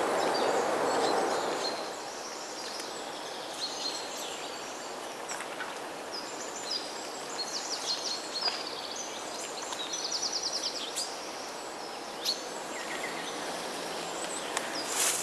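Small songbirds chirping and whistling in woodland, with a quick run of repeated notes (a trill) about ten seconds in. A louder rushing hiss at the start fades away after about two seconds, leaving a soft steady background hiss.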